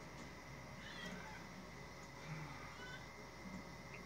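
Faint room tone with a steady high whine, and a few faint short animal calls, about one second and three seconds in.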